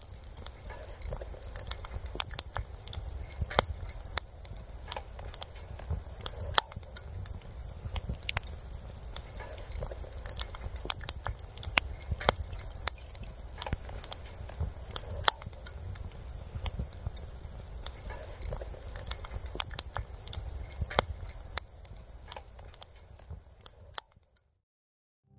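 Wood campfire crackling, with irregular sharp pops and snaps over a steady low rumble; it fades out near the end.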